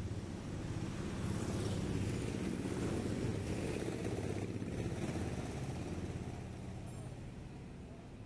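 A motor engine running steadily, swelling over the first couple of seconds and then slowly fading away.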